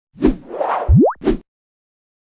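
Animated logo sound effect: a short hit, a whoosh, a quick rising tone and a second hit, all within about a second and a half.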